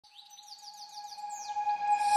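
Quick run of short, bird-like rising chirps over a steady held tone, fading in as the opening of a background music track.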